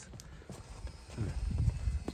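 Holstein cow lowing: a low moo that starts about halfway through and grows louder toward the end.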